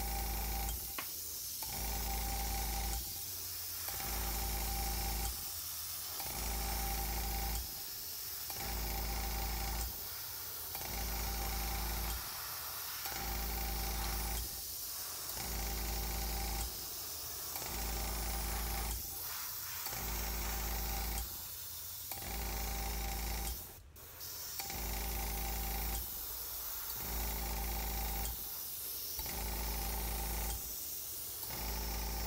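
Airbrush spraying paint in repeated passes: a hiss of air over the hum of its compressor, breaking off briefly about every two seconds between strokes.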